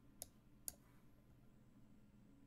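Two sharp computer mouse clicks about half a second apart, the second slightly louder: a chess piece picked up and dropped on its square in an online game.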